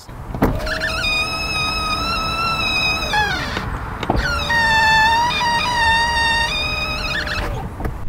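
Tesla Model 3 power window glass squeaking loudly against its rubber door seals as it moves, in two long passes of about three seconds each, with a knock between them about four seconds in. The owner puts the squeal down to seals not treated well enough at the factory.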